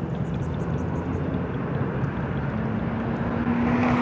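Steady low rumble of a motor vehicle, with a faint steady hum coming in during the second half.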